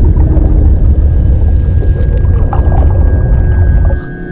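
Deep, loud rumbling drone of soundtrack sound design, with a faint steady high tone held above it; the rumble cuts off suddenly at the end.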